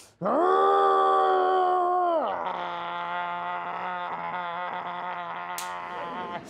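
A man's long, strained growl, 'grrrrrr', made with effort: held at one pitch for about two seconds, then dropping lower and carrying on, with a sharp breath near the end.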